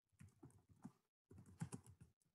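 Faint computer keyboard typing: a few scattered keystrokes, the loudest two close together about one and a half seconds in.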